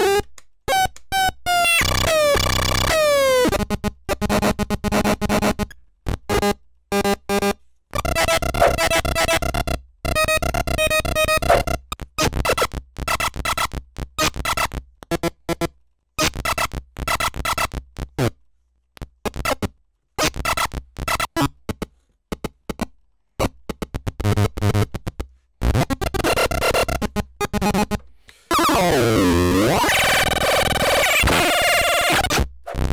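A homemade generative drum machine played by pressing its buttons: stuttering, glitchy electronic drum hits and tones that start and cut off abruptly, with falling pitch sweeps about a second in and again near the end.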